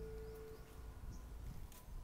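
Background music ending, its last held note dying away about half a second in, then a faint quiet stretch of outdoor ambience with a couple of faint chirps, before a new piece of guitar music starts at the very end.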